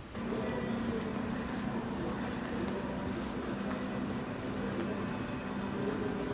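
A steady low hum with faint music behind it, which starts abruptly just after the beginning.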